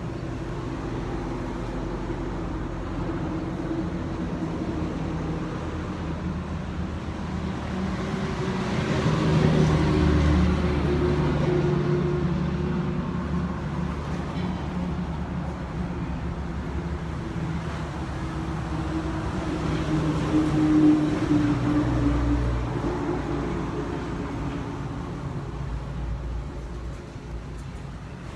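Motor vehicle engine hum that swells twice and fades back, about ten seconds apart.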